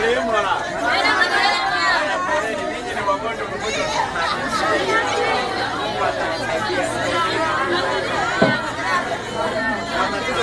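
A crowd chattering: many voices talking and calling out at once and overlapping, with no single clear speaker.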